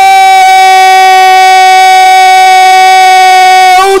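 Football commentator's drawn-out goal call: one long, loud "gooool" held on a single steady pitch, celebrating a goal. It breaks into words near the end.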